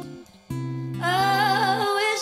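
A woman singing live with guitar accompaniment. After a short break about a quarter second in, a low chord is held, and from about a second in she sings a high line with strong vibrato.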